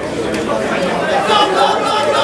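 A jumble of several people's voices talking and calling over one another, with no one voice standing out.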